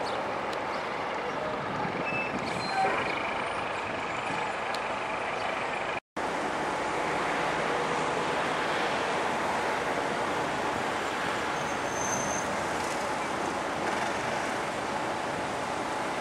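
Steady city road traffic noise, a continuous hum of cars and scooters. The sound drops out completely for a moment about six seconds in.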